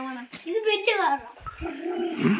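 High-pitched wordless human vocal exclamations, with one long call falling in pitch a little under a second in.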